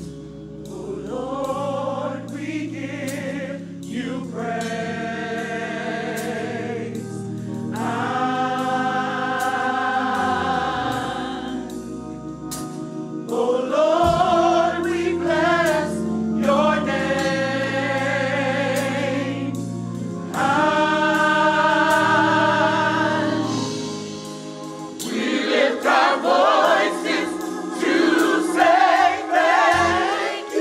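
Gospel choir singing in full harmony, long held chords with vibrato in phrases of a few seconds over sustained low accompaniment notes. The singing builds, loudest in the second half, with a short dip before a last loud, more agitated stretch near the end.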